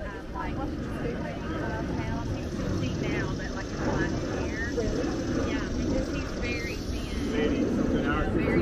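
Steady low rumble of a jet airliner flying overhead, with people's voices in the background.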